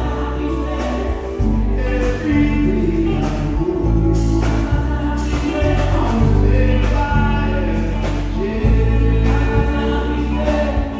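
Live band music with bass guitar, keyboards and drums under choir-like group singing in a gospel style.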